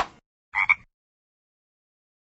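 A frog's tongue shooting out in a quick swish that falls in pitch, then about half a second later a short frog croak in two quick pulses, a "ribbit".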